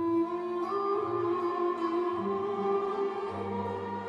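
Orchestra with strings playing a slow Turkish waltz: a sustained melody moving slowly over held bass notes.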